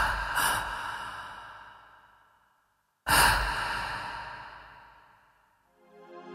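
Two rushing noise sound effects. Each starts suddenly and fades away over about two and a half seconds; the second comes about three seconds in. Steady music tones begin to fade in right at the end.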